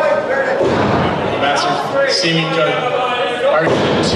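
Voices in a large hall, with a few thuds of wrestlers' bodies hitting the ring mat: one about a second in and another near the end.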